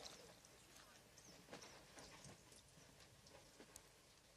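Near silence: faint room tone with a few soft, scattered ticks and knocks.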